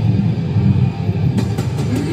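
Hardcore band playing live: distorted guitar and bass hold a low, rumbling riff with no cymbals, and a few drum hits come in about a second and a half in.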